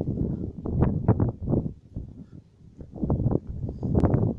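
Footsteps of a walking hiker on a dry, stony dirt trail: a run of uneven steps that eases off around two seconds in and picks up again, over low rumbling noise on the microphone.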